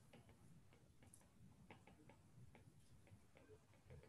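Near silence with faint, irregular clicks of a stylus tip tapping and dragging on an iPad's glass screen during handwriting.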